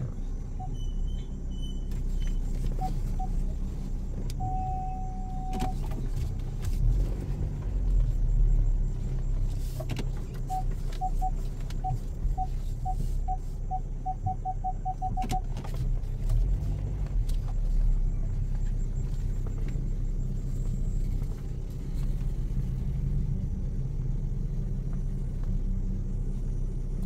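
Steady low engine and tyre rumble inside a car moving slowly over a rough dirt track. An electronic beeper in the car sounds several times: two short beeps about three seconds in, one held tone around five seconds in, and a run of beeps that come faster and faster from about ten to fifteen seconds in.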